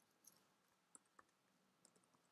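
Faint computer keyboard keystrokes: a few separate clicks about half a second apart as capital letters are typed.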